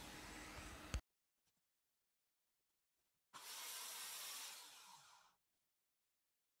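Near silence: faint hiss that cuts off about a second in, then after a gap a second faint hiss lasting about two seconds that fades away.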